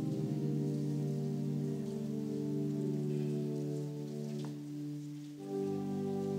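Church organ holding sustained chords, fading slightly and then moving to a new chord about five and a half seconds in.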